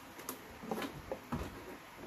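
A few light knocks and rustles from hands shifting a bulky hoodie around an embroidery machine's hoop.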